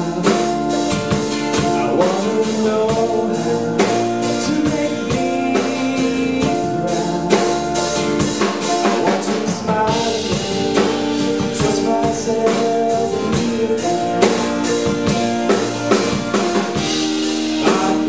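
Live band music: a man singing over a strummed acoustic guitar, with a drum kit keeping a steady beat.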